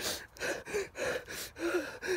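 A frightened man's rapid, gasping breaths, about three a second, some catching in his voice.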